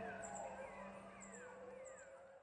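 Faint prehistoric-marsh sound effect of creature and bird calls: drawn-out calls gliding downward, over a short high chirp repeating about once a second, fading out.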